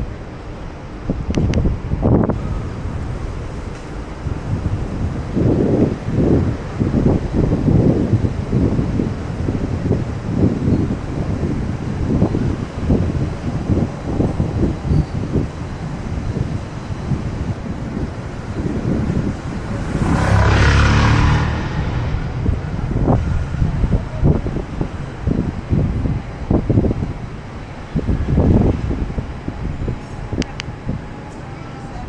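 Wind buffeting a handheld camera's microphone in uneven low gusts over city street noise. About two-thirds of the way through comes a louder rush lasting a second or two.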